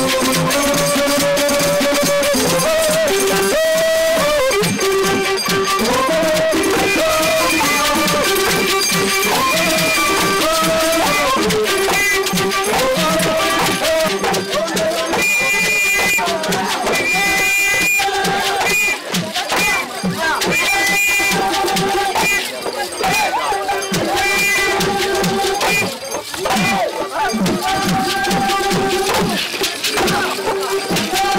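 Traditional Ritungu dance music: voices carry a melody of held notes that step up and down and waver, over a dense clatter of rattling percussion.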